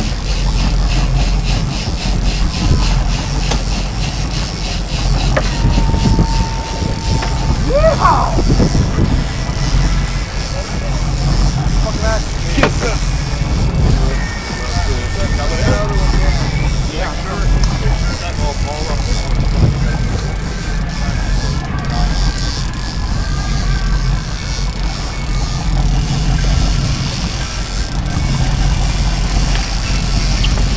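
A sportfishing boat's engines running steadily with water and wind rushing past, while people call out briefly over the engine.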